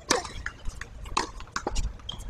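Several sharp knocks at irregular intervals, the first and loudest just after the start: tennis balls striking a hard court and racquets.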